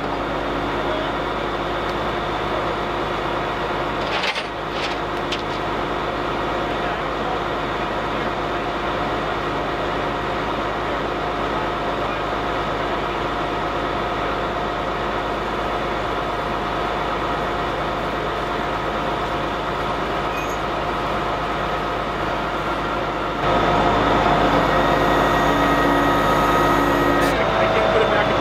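Flatbed tow truck running steadily, a constant engine hum with a fixed whine, growing louder about 23 seconds in.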